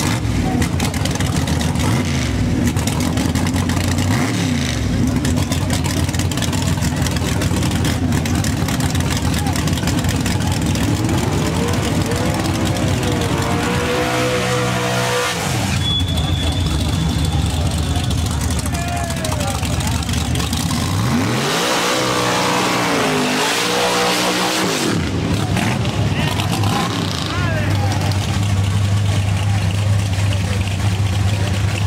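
Drag car engine running loud, revved up high and back down twice, the first time through a burnout with the tyres spinning on the track. Crowd voices sound underneath.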